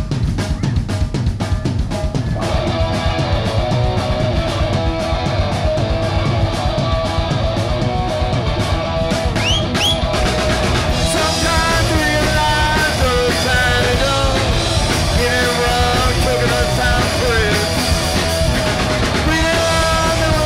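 Rock band playing live, with drum kit, electric guitars and bass guitar: the drums keep a beat from the start, and the full band comes in about two seconds in.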